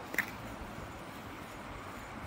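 Outdoor ambience: a steady low hiss, with one brief sharp sound just after the start.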